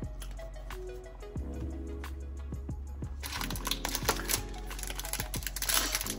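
Background music, with soft clicks from trading cards being handled. About three seconds in, a foil trading-card pack starts crinkling as it is torn open.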